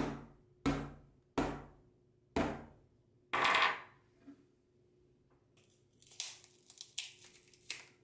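Hardness-tester pick (Mohs 8 tip) struck down on a Corning-made tempered-glass screen protector on a phone: five sharp strikes over about three and a half seconds, the last one longer and louder, the hard tip cracking the glass. From about six seconds in comes a run of crackling as the cracked protector is peeled off the phone.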